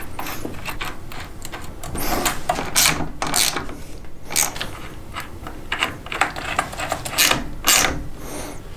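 Socket ratchet wrench clicking in irregular bursts as nuts are run down and tightened onto battery terminal posts over the cable lugs.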